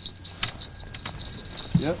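Night insects chirping in a steady, pulsing high-pitched chorus, with a couple of faint knocks about half a second and a second in.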